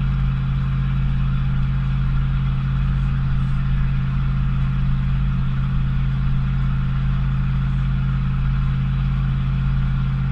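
Ford 460 big-block V8 (7.5-litre) pickup engine pulling at a steady cruise under a towing load of about 9,000 lb, heard inside the cab. It is a steady low drone at one unchanging pitch, with road rumble beneath.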